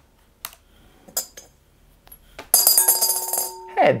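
A few light taps on a laptop keyboard, then about two and a half seconds in a coin lands in a glass bowl, clattering and spinning while the bowl rings for about a second.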